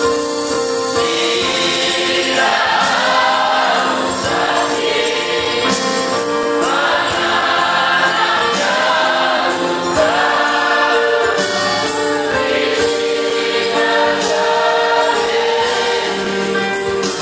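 Choir singing a gospel hymn over sustained chords, with a steady jingling percussion beat.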